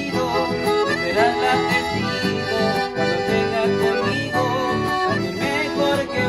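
A piano accordion plays the melody of an instrumental passage over a strummed acoustic guitar accompaniment. The music is steady and continuous.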